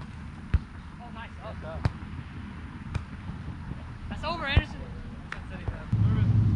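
A volleyball being struck by players' hands and forearms during a rally: five sharp slaps at roughly one-second intervals.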